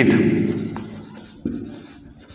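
Marker pen scratching on a whiteboard as a word is written, in two stretches, the second starting about one and a half seconds in.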